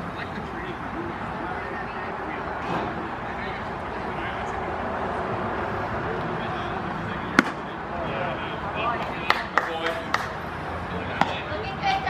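Spectators' voices and chatter at a baseball game, with one sharp crack of a pitched baseball striking about seven seconds in. A few lighter clicks follow.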